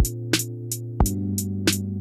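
Programmed drum beat from a drum sampler: hi-hat ticks about three times a second with kick and snare hits, over held keyboard chords that change about a second in.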